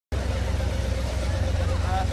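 1976 Ford F-150 pickup's engine running steadily with a deep, low rumble. A man's voice over a loudspeaker comes in near the end.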